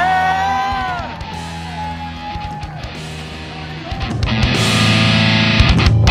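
Rock music led by electric guitar, with a bending guitar line at the start; the full band comes in louder about four seconds in.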